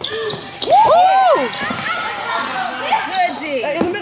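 Basketball game sounds in a gym: a ball bouncing and short, sharp squeaks that rise and fall, loudest about a second in, over spectators' voices.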